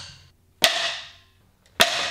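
Two sharp cracks about a second apart, each dying away quickly: punches snapping coloured martial-arts practice boards.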